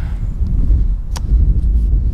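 Loud wind buffeting a phone's microphone, a dense fluctuating low rumble that drowns out the speaker, with one brief click a little past halfway.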